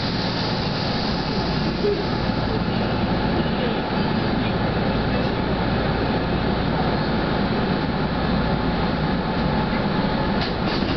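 Steady running noise of a Kintetsu electric train heard from inside the cab, its wheels and motors rumbling evenly on the track.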